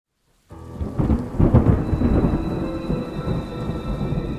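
Thunder rumbling over heavy rain. It starts suddenly about half a second in, is loudest around a second and a half, then eases off.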